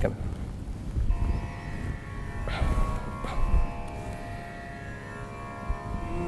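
A steady drone of several held tones comes in about a second in, the kind used as the pitch reference for Carnatic singing. A couple of faint knocks sound about two and a half and three seconds in.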